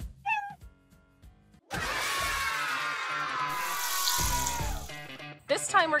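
Logo sound: a cat meow effect with a music sting. A long note starts about two seconds in and slides slowly down in pitch for about three seconds, with a hiss near its end.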